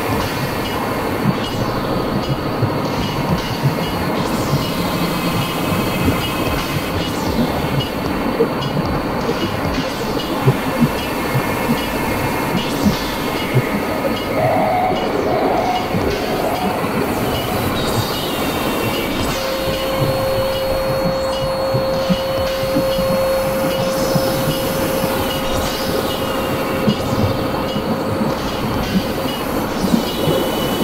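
Experimental electronic noise-drone music: a dense, steady, rumbling noise texture sprinkled with sharp clicks, much like a passing train. A steady held tone comes in about two-thirds of the way through and lasts several seconds.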